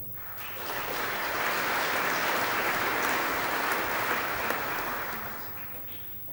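Audience applause. It builds quickly about half a second in, holds, and dies away over about five seconds.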